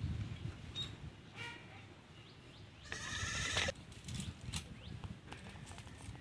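A farm animal calling twice: a short call about one and a half seconds in, then a longer, louder one at about three seconds.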